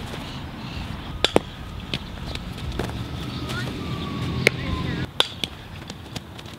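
Sharp knocks of a softball off a bat and into a leather fielding glove during an infield ground-ball drill, several over a few seconds, the loudest about four and a half seconds in.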